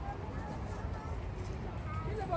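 Faint, indistinct distant voices of children at a playground over a low, steady rumble of wind on the microphone.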